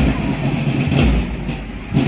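Marching band drums beating about once a second, over a steady low rumble.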